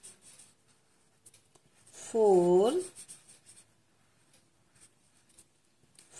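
Red felt-tip marker scratching and dabbing on paper as a circle is coloured in, faint and intermittent. One spoken counting word is heard about two seconds in.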